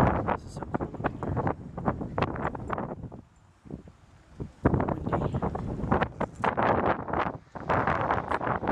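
Wind buffeting the microphone in irregular gusts, easing off for a second or so in the middle before picking up again.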